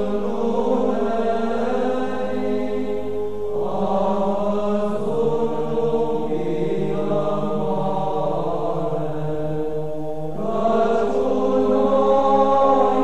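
Slow vocal chant, several voices holding long sustained notes. They move to new notes about three and a half seconds in and again about ten and a half seconds in.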